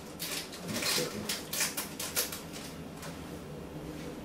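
Plastic wrapping rustling and crinkling in quick irregular crackles as it is handled, dying away about two and a half seconds in.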